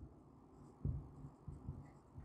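Marker writing on a whiteboard: a few faint, short strokes.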